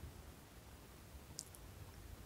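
Near silence: quiet room tone with a faint hiss, and one faint, short click a little past halfway.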